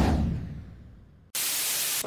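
A whoosh transition effect fading away over about a second, then, after a brief gap, a steady hiss of radio static that cuts in abruptly.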